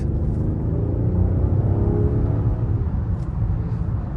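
Inside the cabin of a 2016 Rolls-Royce Wraith at highway speed: a steady low rumble of engine and road noise, with a faint V12 engine drone that rises and then falls in pitch as the car pulls.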